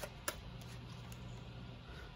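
Quiet room tone with a faint steady low hum, broken by a light click of handled cards just after the start.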